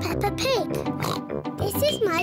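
A young cartoon pig's voice with a pig snort, over light background music.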